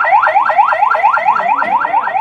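Police vehicle siren sounding a fast yelp: a loud electronic tone sweeping up again and again, about four times a second.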